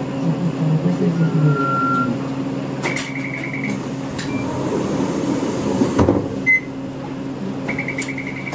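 Inside a moving Isuzu Erga Mio city bus: the diesel engine's steady low hum, with a short rapid electronic beeping trill about three seconds in and again near the end, and a single knock about six seconds in.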